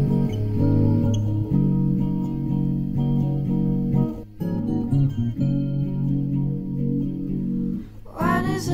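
Song demo music: guitar playing sustained chords with no singing, with a short break about four seconds in.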